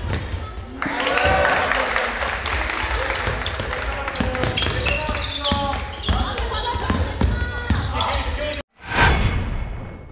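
Basketball game noise in a gym: a ball bouncing on the hardwood court and players' voices calling out, echoing in the large hall. About 8.6 s in the game sound cuts off and a single deep boom from a logo-intro sound effect comes in, then fades away.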